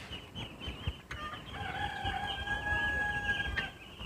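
A rooster crowing once: one long, steady call starting about a second in and ending just before the end.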